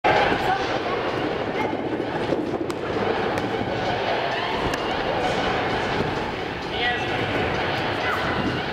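Indistinct chatter of several voices over a steady background hubbub, with a few short faint knocks.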